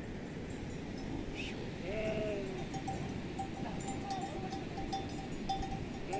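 Livestock on open pasture: a bell on a grazing animal tinkles on and off at one pitch over steady low background noise. About two seconds in, one animal from the yak herd gives a single call that rises and then falls.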